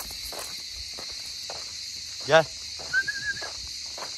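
Steady high-pitched insect chorus in the background, with footsteps crunching on gravelly ground. A short wavering whistle-like note sounds about three seconds in.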